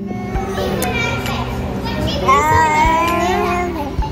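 Children playing in an indoor play area: a hubbub of kids' voices with one high child's call in the middle, over steady background music.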